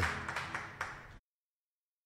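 Congregation clapping, a haze of claps that fades away, then the sound cuts out abruptly to dead silence a little past a second in.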